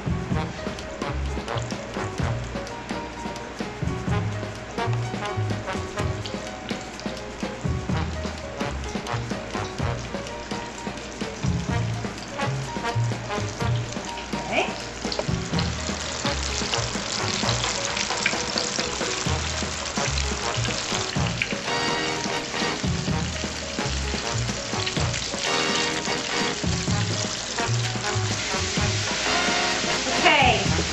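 Flour-coated chicken pieces deep-frying in hot oil: a steady sizzle that grows louder about halfway through.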